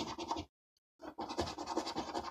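A coin scraping the coating off a scratchcard in quick, rapid strokes. It stops about half a second in and starts again about a second in.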